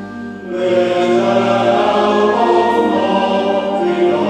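Men's choir singing with a concert wind band of brass, clarinets and percussion. After a brief dip, the music comes in louder about half a second in and stays full.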